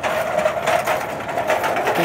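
Empty steel flatbed shopping cart rolling over wet asphalt, its casters and frame rattling steadily with a held hum.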